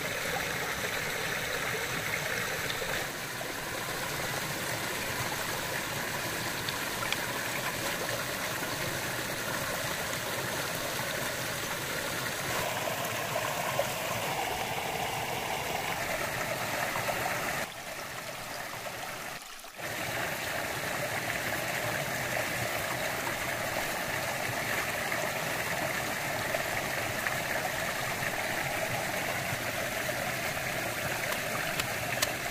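Mountain stream rushing steadily over rocks, with a brief dip in level about two-thirds of the way through.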